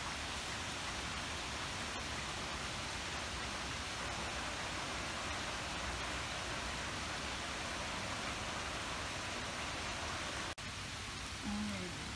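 Steady heavy rain falling on trees, leaves and lawn, an even hiss that cuts out for an instant about ten and a half seconds in.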